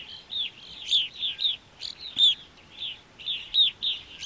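A flock of evening grosbeaks calling: short, clear, downslurred notes, about three a second, some overlapping.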